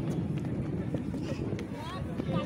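Indistinct voices of people talking in the background, with light footsteps on a brick-paved walkway.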